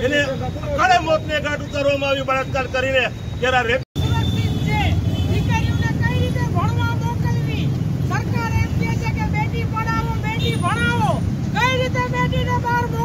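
Protesters' voices over a steady low rumble of street traffic; the sound cuts out for an instant about four seconds in.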